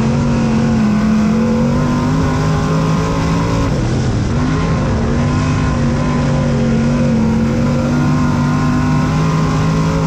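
Dirt late model race car's V8 engine heard from inside the cockpit, running hard at high revs. Its pitch dips briefly about four seconds in, then comes back up and holds steady.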